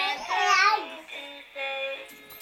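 A toddler's high voice rising and falling in a loud, excited sing-song for most of the first second, over recorded music that goes on with steady held notes.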